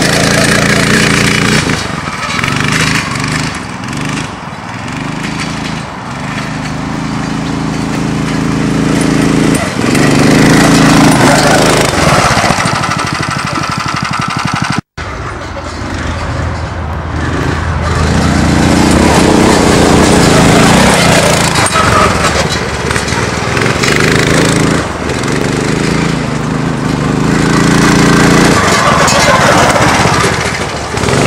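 Small 9 hp engine of an off-road go-kart revving up and down as the kart drives past several times, each pass growing louder and then fading. There is a brief cut in the sound about halfway through.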